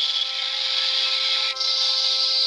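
Star Trek phaser firing sound effect from the GMProps cricket phaser electronics board's small speaker: a steady high hissing whine with a few held tones under it, dipping briefly about one and a half seconds in and coming back brighter.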